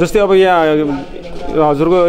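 A man speaking into a handheld microphone, with long drawn-out vowels and a short pause about a second in.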